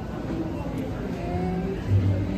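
Indistinct background voices over a low, steady rumble.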